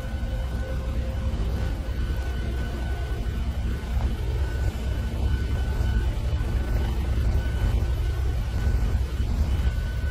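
Helicopter engine running: a steady low rumble with a faint, steady high whine over it.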